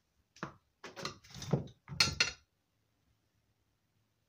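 Small metal parts and tools clattering on a workbench: four or five knocks and clinks in the first two and a half seconds, the loudest about two seconds in with a short metallic ring.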